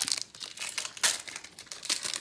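Foil wrapper of a Pokémon TCG Team Up booster pack crinkling and tearing as it is opened, a dense run of crackles with a louder one about a second in.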